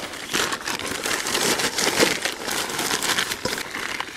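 Thin plastic bag crinkling and rustling with many small crackles as it is filled with potatoes and hung on a hanging dial scale to be weighed.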